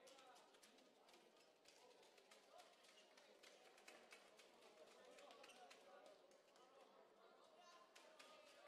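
Near silence: faint sports-hall ambience of distant, indistinct voices with scattered light taps and clicks.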